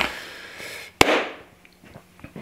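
Plastic lure packaging being handled: a short rustle, then one sharp snap about a second in.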